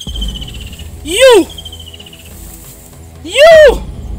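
Two short, loud vocal exclamations, each rising then falling in pitch: one about a second in and one near the end. A faint, steady high tone sounds under the first half.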